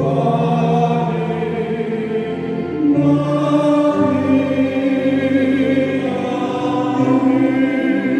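Church hymn sung slowly by many voices with instrumental accompaniment, in long held notes that change about once a second.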